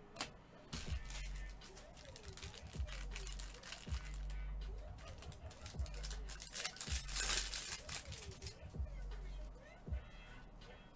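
Foil wrapper of a jumbo trading-card pack crinkling and tearing as it is handled and ripped open, densest about seven seconds in, over background music with a steady bass beat.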